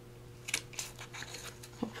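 Handheld metal hole punch clicking and rattling as it is handled and moved along the edge of a chipboard tag, with a sharper click about half a second in and light paper rustling after.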